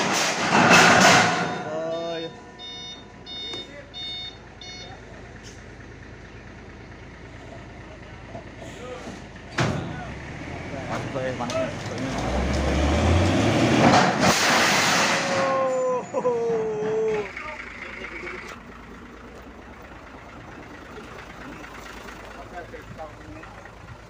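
Truck unloading long steel I-beams: a short run of reversing-alarm beeps early on, a single knock, then the truck's engine working up louder for several seconds around the middle, with men calling out over it.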